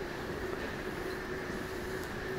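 Steady mechanical hum of a subway station concourse, with one low tone held throughout.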